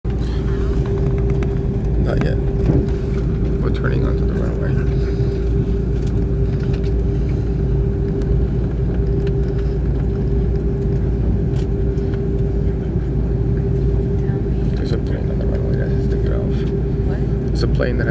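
Cabin noise inside an Airbus A330-300 taxiing: the engines at low power give a steady low rumble with one steady mid-pitched hum over it.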